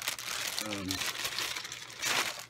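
Plastic packaging crinkling and rustling as a radio's hand microphone is unwrapped from its bag.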